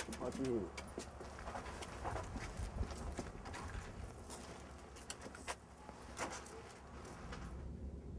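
Scattered light clinks and knocks of restraint chains and handcuffs on shackled youths as they are walked, with faint low voices.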